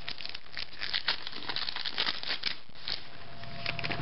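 Foil trading-card pack wrapper crinkling and being torn open, a dense run of small crackles.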